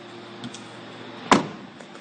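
A single sharp clunk of the Kia Venga's rear door about a second and a half in, preceded by a faint tap, over a low steady background hum.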